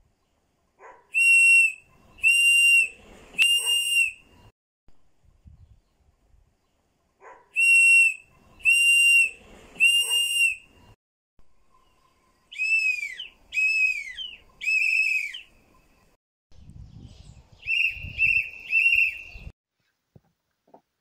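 Shrill whistle blasts blown by a woman, in sets of three: two sets of three steady, level blasts, then three blasts that rise and fall in pitch, then three short, quick chirps near the end.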